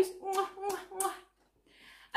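A woman blowing kisses: four quick kissing smacks of the lips in about a second, each with a short voiced 'mwah'.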